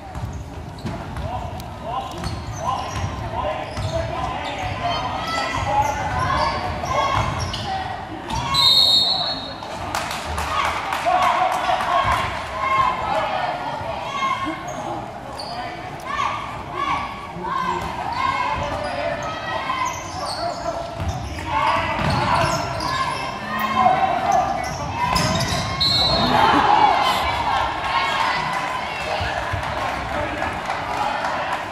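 Basketball game in an echoing gym: a ball bouncing on the hardwood court, with crowd chatter and shouts. Short referee whistle blasts sound about 9 s in and again late on.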